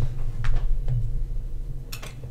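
Steady low room hum with a few light clicks, and a sharper click just before the end.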